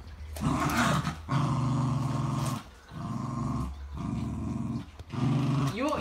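Small curly-coated dog growling in about five long, low growls of roughly a second each with short breaths between, while holding a tennis ball in its mouth. A playful growl at bath time, which the owner treats as a game.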